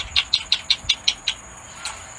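A chipmunk chipping: a quick, even series of short, sharp chips, about five or six a second, that stops about a second and a half in.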